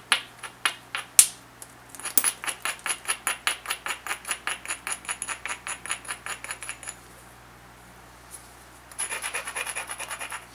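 An abrading stone rubbed quickly back and forth along the edge of a banded obsidian biface, gritty scraping strokes about six a second, grinding the edge to prepare striking platforms. A few sharp single clicks come first, the loudest just past a second in. The strokes stop for about two seconds, then start again in a shorter run near the end.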